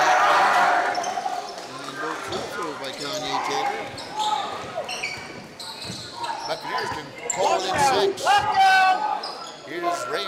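A basketball dribbled on a hardwood gym floor during live play, with players' and spectators' shouts echoing in the gym, loudest in the first second and again near the end.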